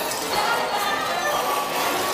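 The dark ride's show soundtrack playing through its speakers: music and cartoon sound effects over a continuous busy background.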